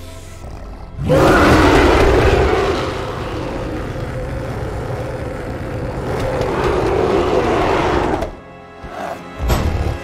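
Orchestral film score that swells loudly about a second in, with a giant gorilla's roar mixed into it; a second swell follows later and a short burst near the end.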